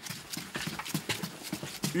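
Boots climbing hard stair steps: a quick, irregular run of footsteps.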